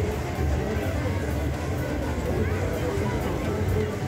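Fairground ambience: music with a heavy bass and a steady beat playing loudly over speakers, mixed with voices and crowd chatter.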